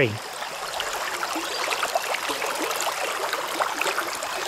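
Stream water flowing into a rocky pool: a steady rush with small gurgles and ticks.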